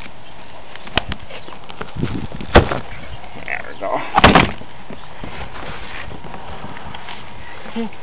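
A cardboard shipping box being opened and its flaps handled: a few sharp snaps and knocks, the loudest about two and a half seconds in, and a brief rustling scrape about four seconds in, over a steady hiss.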